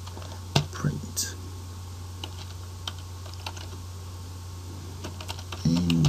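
Typing on a computer keyboard: irregular keystroke clicks, several sharper ones in the first second and a half, then sparser taps.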